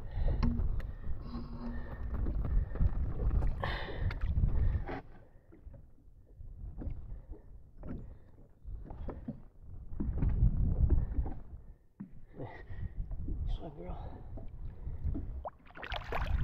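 Lake water sloshing and splashing against the side of a boat as a muskie is held in the water by hand and revived before release, with an uneven low rumble throughout.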